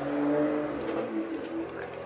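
A man humming low with his mouth closed, one steady held tone for about a second and a half that then fades.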